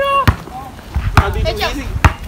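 Basketball being dribbled on a hard outdoor court, two bounces about a second apart, among young voices calling and laughing.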